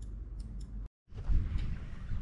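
Faint clicks over quiet room tone, then a sudden cut to a moment of silence, followed by low rumbling noise on a handheld camera's microphone outdoors.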